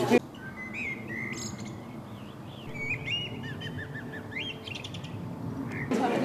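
Small birds chirping outdoors: scattered short chirps and whistles, with a quick run of about five repeated notes near the middle and a rising whistle just after, over a quiet background.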